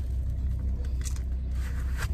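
Car engine idling, a steady low rumble heard from inside the cabin, with a short higher noise about a second in.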